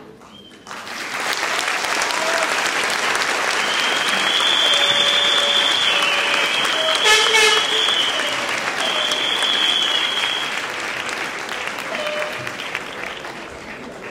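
Large audience applauding, breaking out about a second in, swelling, then fading toward the end.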